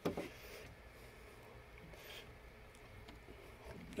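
Faint handling sounds of a screwdriver tightening a small clamp screw in a 3D printer's plastic X carriage, with a few soft clicks.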